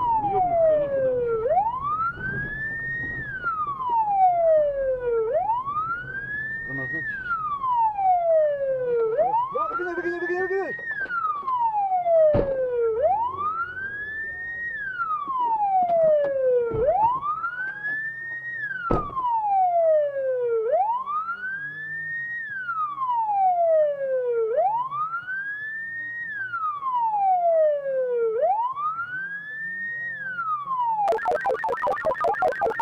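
Police siren wailing steadily: each cycle rises quickly in pitch and falls away more slowly, repeating about every four seconds, with a few sharp clicks over it.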